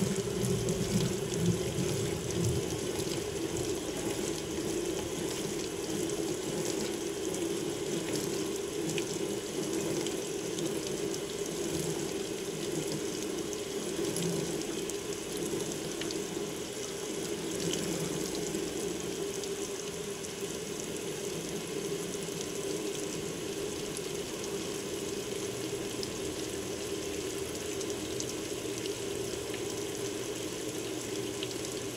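Water pouring steadily from the fill inlet of a Hotpoint HTW240ASKWS top-load washer into the stainless basket as the tub fills for the rinse. A low mechanical sound from the still-turning basket fades out within the first few seconds.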